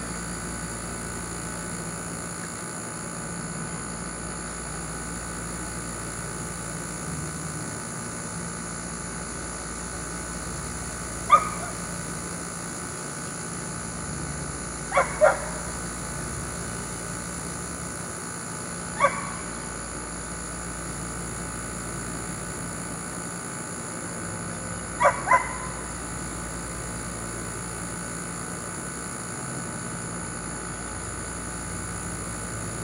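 A dog barking a few times over a steady background hum: one bark, then a quick pair, another single bark, and another quick pair, a few seconds apart.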